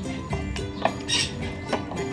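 Wooden muddler crushing mint leaves in a glass jar: a few short knocks against the glass and a brief grinding scrape about a second in, over background music.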